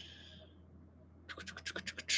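A faint hiss fades out in the first half second, then a quick run of about eight small clicks follows about a second and a half in.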